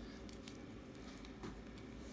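Faint rustling of hands pressing and smoothing an elastic wrist brace's hook-and-loop strap down onto the wrist, with a few soft taps.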